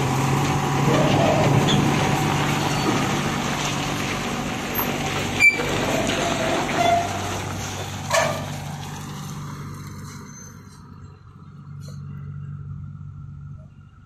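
Eicher tractor-trailer's diesel engine running as the truck drives off, its drone fading away over the second half. Two brief sharp sounds stand out, about five and eight seconds in.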